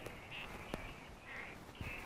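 Faint outdoor night ambience: short, harsh animal calls about three times over a low hum and hiss, with one sharp click a little before the middle.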